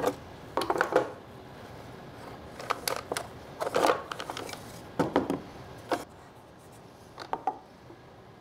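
A handful of light wooden knocks and clicks at irregular intervals: a board being handled and set against the wooden fence of a mortising jig.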